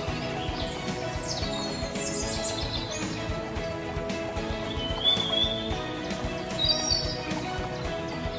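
Background instrumental music with birdsong mixed in: a steady bed of held notes, with a handful of short high bird chirps and whistles scattered through, some sliding down in pitch.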